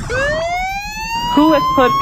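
A siren wail, one pitched tone that rises slowly and steadily throughout, with a voice starting to speak over it about two-thirds of the way in.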